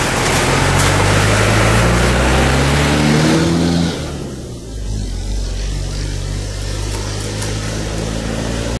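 A bus engine approaching and passing close by, its pitch climbing as it nears. It is loudest just before it goes past about four seconds in, then drops away sharply. A quieter, steady engine of a following van remains.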